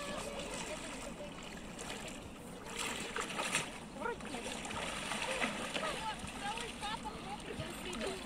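Shallow river water splashing as a wading person sweeps her hands through it, loudest about three to four seconds in, over indistinct distant voices.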